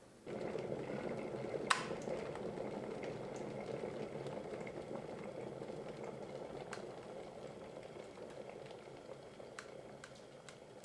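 Stainless-steel Tefal electric kettle boiling water, a dense rushing bubble that comes in suddenly just after the start. A sharp click sounds about two seconds in, and the boil then slowly dies down.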